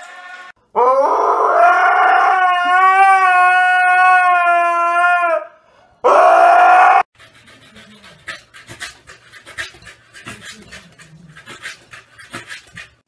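A dog howling: one long howl held on a steady, slightly wavering pitch for about five seconds, then a second, shorter howl about a second later. After that, quieter scattered light clicks and taps.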